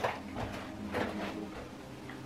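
Soft rustling and swishing of long, wet, gel-coated hair being handled, with a few faint strokes about half a second and a second in.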